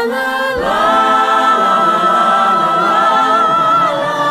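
Several voices from a stage-musical cast recording singing wordless "la" syllables in harmony. About half a second in the voices move to new pitches, and a high lead note with vibrato is held above the others until near the end.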